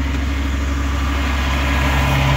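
Semi-truck tractor's diesel engine idling steadily, getting a little louder near the end.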